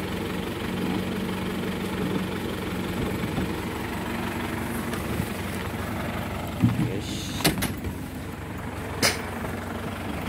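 An engine idling steadily throughout, with a few sharp knocks in the last few seconds.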